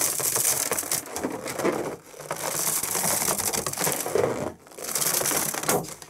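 Two inflated latex balloons being squeezed and rubbed hard against each other, a dense crackling squeak of rubber on rubber that comes in three long stretches.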